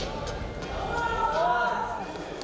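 A person's voice giving a drawn-out call that rises and falls in pitch, loudest around the middle, after a sharp knock at the start.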